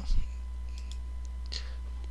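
A soft bump just after the start, then a few light computer mouse clicks as the presentation slide is advanced, over a steady low electrical hum.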